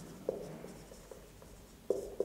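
Marker pen writing on a whiteboard: short strokes, with two sharp taps of the tip, one just after the start and one near the end.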